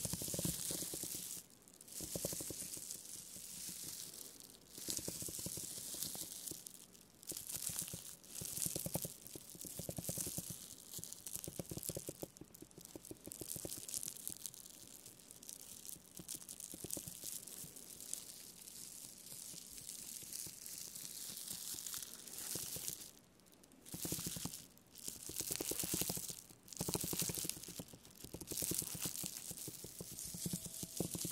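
Spiky rubber massage ball rolled and pressed over plastic bubble wrap, crinkling the plastic in repeated strokes with brief pauses between them.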